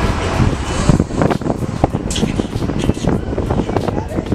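Wind rumbling and buffeting on the microphone over the steady running of a sport-fishing boat's engine at sea.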